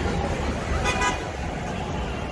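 A short car horn toot about a second in, over steady street traffic and crowd noise.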